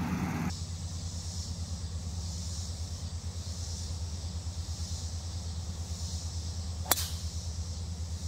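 A golf driver striking a ball off the tee: one sharp crack about seven seconds in. Under it runs a steady low engine idle.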